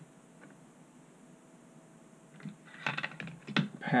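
Quiet, then a quick run of small clicks and taps about two and a half seconds in: metal sculpting tools and a thin metal cutout template being handled and set down on a wooden board.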